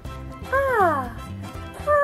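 A woman's high-pitched, squeaky character voice gives one rising-then-falling exclamation about half a second in, over light background music.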